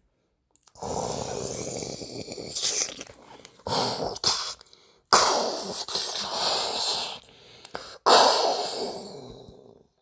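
A person's voice making lion-fight sound effects: a run of harsh, breathy growls and roars, each starting sharply and tailing off, the loudest about five and eight seconds in.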